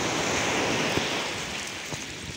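Shallow seawater washing and splashing at the shoreline, a steady rush of water that eases slightly near the end.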